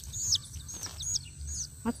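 Young chicks peeping over and over: short, high, falling chirps, about three or four a second.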